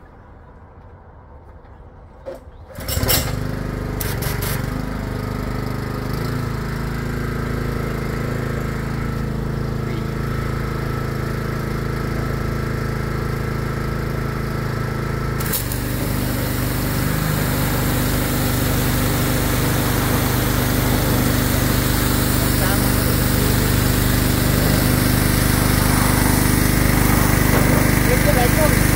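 Pressure washer starts up about three seconds in and runs steadily. About halfway through, spraying begins and a loud steady hiss of the water jet joins the engine.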